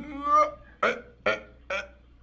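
A man's voice from a film soundtrack: a drawn-out, wavering vocal sound, then a run of short, evenly spaced vocal bursts, about two a second, with no words.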